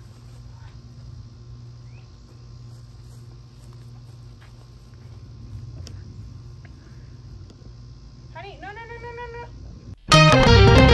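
Quiet outdoor background: a steady low hum with a few faint ticks. Near the end, a short high-pitched child's call.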